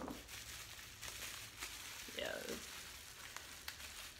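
Faint rustling and crinkling of packaging being handled, with a few small clicks.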